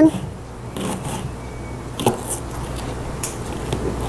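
A kitchen knife cutting up a raw onion by hand, heard as a few separate, irregular light cuts and clicks of the blade.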